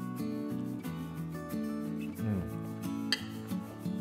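Background music of held notes that change in steps, with a single sharp click about three seconds in.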